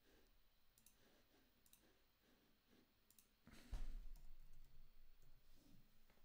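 Near silence with a few faint, scattered computer clicks, and one louder low thump about three and a half seconds in.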